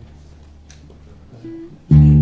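Acoustic guitar: a quiet stretch with a faint low hum, then a single short note about one and a half seconds in, then a chord struck loudly just before the end that keeps ringing.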